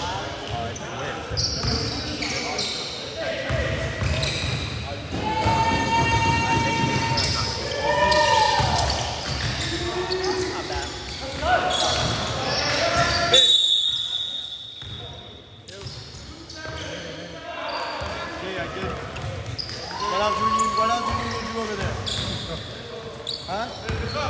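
Basketball bouncing on a gym floor during play, the thuds echoing through a large hall, with players calling out to each other. A single short high whistle sounds about halfway through.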